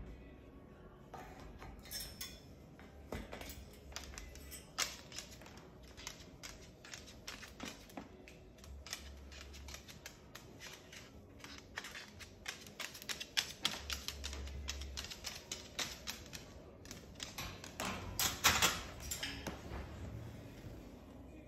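Moluccan cockatoo's claws and beak clicking and tapping irregularly on a hardwood floor as it handles a plush toy, the clicks growing denser in the second half with a quick run of them near the end.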